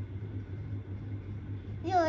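Steady low background hum with nothing else over it; a voice starts up just at the very end.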